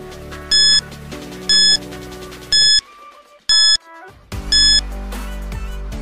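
Five short electronic beeps about a second apart, a quiz countdown sound effect, over soft background music that drops out briefly midway.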